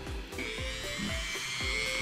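Dremel rotary tool fitted with a 120-grit sanding band, switched on about a third of a second in and running steadily on its low setting with a high whine. Background music with a steady beat plays underneath.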